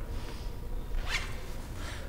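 A zipper pulled once, briefly, about a second in, over a steady low room hum.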